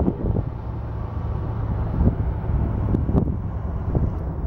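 Steady engine and road rumble of a moving tour vehicle, with wind noise on the microphone.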